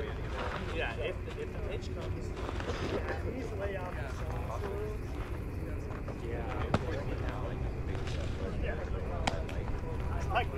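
Indistinct chatter of voices around a softball field over a steady low rumble, with a single sharp knock about two-thirds of the way through and a fainter click near the end.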